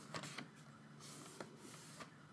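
Pages of a photo book turned by hand: faint paper swishes, with a few light clicks near the start.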